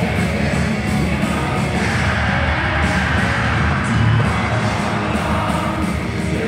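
Heavy metal band playing live, loud and steady: drums, distorted electric guitars and keyboards, recorded from the audience in a large concert hall.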